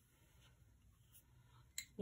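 Near silence: faint room tone, with one short click just before the end.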